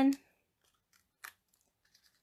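A single brief papery rustle about a second in, as a small cardstock piece backed with foam adhesive dots is handled between the fingers, with a few faint ticks around it.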